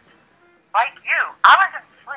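A high-pitched voice with a thin, telephone-like sound in short rising-and-falling phrases, with one sharp click about one and a half seconds in.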